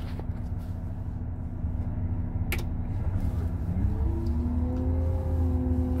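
Heavy machine's engine running steadily, heard from its cab. About three and a half seconds in it revs up, its pitch rising and then holding higher, with a single sharp click shortly before.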